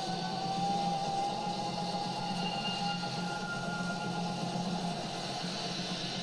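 Sci-fi TV sound effect of fiery crackling energy: a dense, steady rushing rumble with a low hum and a thin held tone above it.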